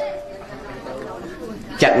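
A man talking pauses briefly, leaving low background noise, and his voice resumes near the end.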